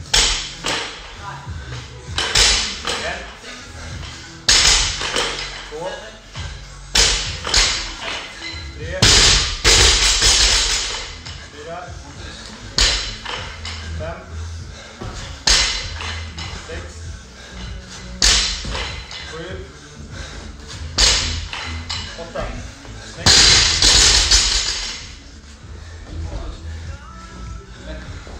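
Barbell power snatches with bumper plates in steady succession, about one rep every two to three seconds; each rep gives a short loud burst of noise with a thump as the bar comes back down to the rubber floor.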